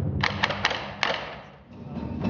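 Taiko drums struck with wooden sticks: a quick run of hits in the first second, a last hit at about one second, then the sound dies away.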